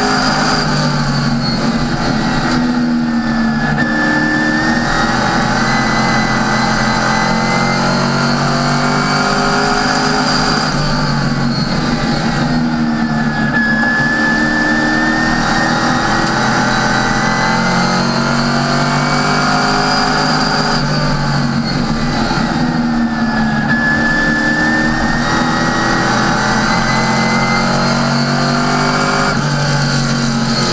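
NASCAR Sportsman race car's V8 engine heard from inside the cockpit at race pace. Its pitch drops and climbs again about every ten seconds as the driver lifts for each turn and gets back on the throttle.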